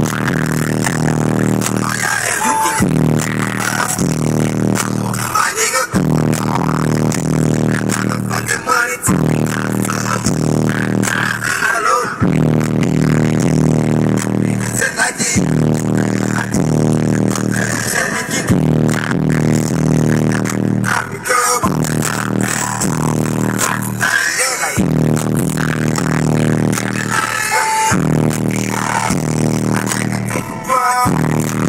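A rap song played loud through a truck's car-audio system with T3 subwoofers, heard inside the cab: a heavy, repeating bass beat with rap vocals over it. The beat drops out briefly about every three seconds.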